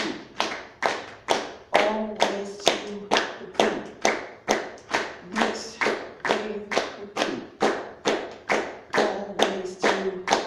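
An audience claps in unison to keep a steady beat, about three claps a second, in a reverberant room. A few times a voice sounds a short low tone over the claps.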